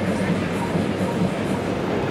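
Steady, dense noise of a busy city street, with a low hum underneath.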